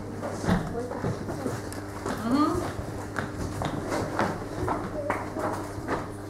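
Indistinct children's voices in a classroom, with scattered footsteps and light knocks as a pupil walks up to the blackboard.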